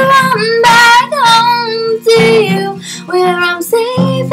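A woman singing with her own guitar accompaniment, holding long notes between short phrases.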